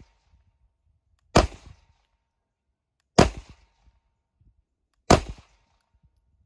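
Canik METE 9mm pistol fired three times at a slow, steady pace, a little under two seconds between shots, each shot followed by a short echo.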